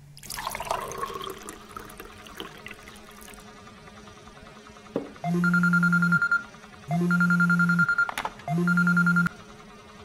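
A smartphone vibrating with an incoming call as it lies on a tiled counter: three buzzes of about a second each, starting about five seconds in. Before them, a soft swishing.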